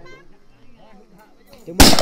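A single loud gunshot from a locally made long gun, fired near the end after a quiet stretch, its report ringing on as it dies away.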